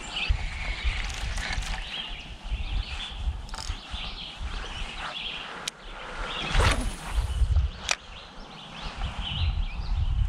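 Small birds chirping on and off over a low rumble of wind on the microphone, with a brief swish a little past halfway and a couple of sharp clicks.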